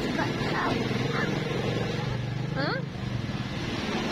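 A vehicle engine running with a steady hum in street traffic for about two seconds, then fading. A child says a brief "huh?" near the end.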